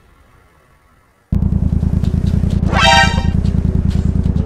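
A quiet first second, then a loud, steady low engine rumble starts abruptly, with one short vehicle horn toot, under half a second long, about three seconds in.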